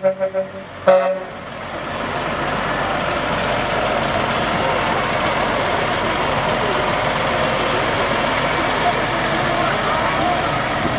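The last second of brass band music, then from about a second and a half in the steady noise of a semi truck's diesel engine as the truck rolls slowly past close by.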